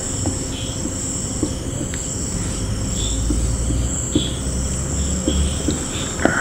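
Crickets chirping steadily in the background over a low rumble, with faint strokes of a marker on a whiteboard as a line is drawn.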